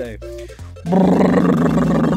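A loud, rough engine-like roar comes in about a second in and holds steady, as for a toy truck being driven. Before it, the tail of a jingle.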